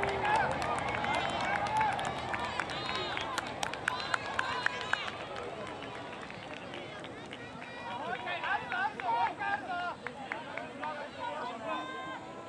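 Many high-pitched voices of youth footballers and sideline spectators calling out at once, with a scatter of short sharp clicks in the first few seconds. The voices thin out midway and pick up again near the end.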